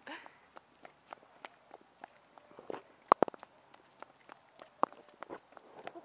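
Footsteps of a toddler and an adult walking on a paved path: a scatter of light, irregular taps, with a few sharper clicks a little after three seconds in.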